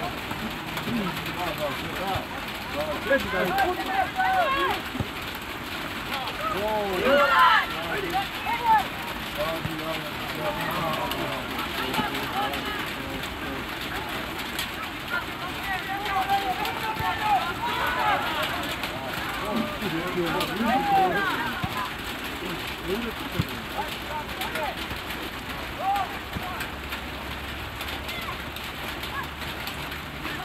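Players and people at the touchline shouting and calling out during a youth football match, in short scattered calls over a steady outdoor hiss. The loudest calls come about seven seconds in and again between about sixteen and twenty-one seconds in.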